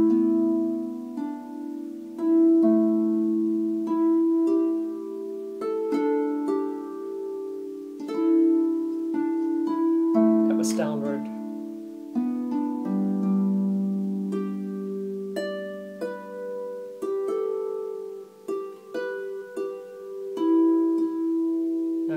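Stoney End double strung harp played slowly and unhurriedly: left-hand fifths plucked in the lower range ring on beneath single notes plucked higher up by the right hand, each note sounding cleanly and left to sustain.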